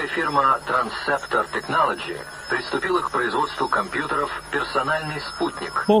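Continuous speech with a thin, narrow-band, radio-like sound, as from a processed voice clip, with a faint steady high whine behind it.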